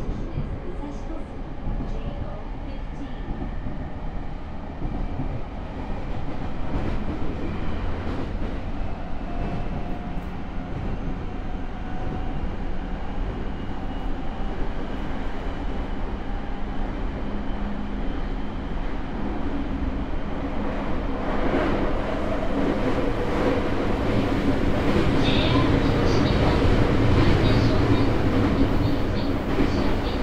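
Interior of a JR E217-series motor car gathering speed: the Mitsubishi IGBT inverter and MT68 traction motors give a whine that slowly rises in pitch. The wheel and rail running noise grows steadily louder toward the end.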